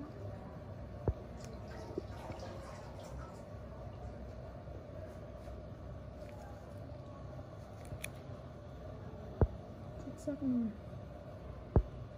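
Steady low hum of room background, broken by three sharp clicks: one about a second in, a louder one about nine seconds in and another just before the end. A voice murmurs briefly a little before the last click.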